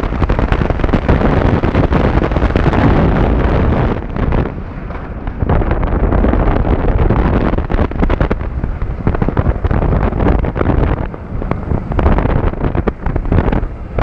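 Wind rushing over a camera mounted at the front of an Intamin launched inverted roller coaster, mixed with the rumble of the train running along its track at speed. The noise dips briefly about four seconds in, then comes back.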